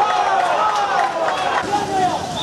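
Loud, excited shouting voices that go on without a break.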